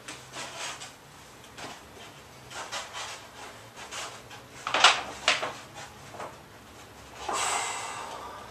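Paper bags weighted with cans of tuna rustling and crinkling on the feet as the legs are lifted, with two sharp, loud crinkles about five seconds in. Near the end a long, forceful breath is blown out through pursed lips from the effort.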